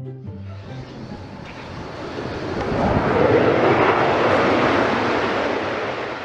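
Jet aircraft engine noise on an airport apron: a loud rushing sound that swells to a peak about three seconds in, holds, and fades near the end.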